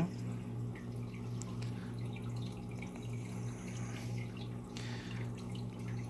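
Steady low hum with water trickling and dripping in a running aquarium.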